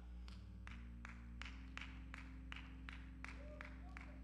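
Quiet sustained low chords on a keyboard instrument, changing twice, with a light tapping beat about three times a second.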